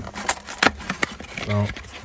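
A cardboard box and its packaging being opened and handled: a few sharp clicks and crinkles in the first second. A short spoken word follows about 1.5 s in.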